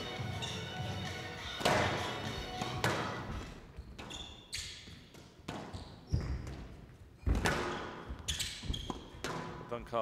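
Short music sting opening the reel, then a squash rally: sharp cracks of racket on ball and ball on the court walls, about one a second, echoing in a large hall.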